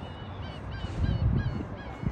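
Gulls calling over the harbour: a quick run of short, high squawks, over a low rumble that swells in the middle.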